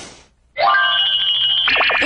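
Short musical transition jingle of bright, held bell-like tones that starts about half a second in, after a brief drop to near silence.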